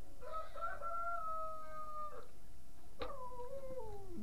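Domestic pig whining: two long, high-pitched calls, the first held level for about two seconds, the second starting suddenly about three seconds in and falling in pitch.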